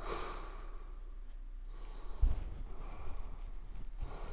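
Quiet handling of a folded paper quick-start guide, with a dull low thump a little over two seconds in.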